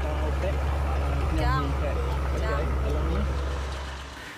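A steady low engine rumble, fading out near the end, with a girl's quiet voice speaking over it.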